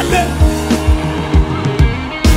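Live gospel band playing an upbeat worship song: sustained bass and keyboard notes under a kick drum beating a little over twice a second.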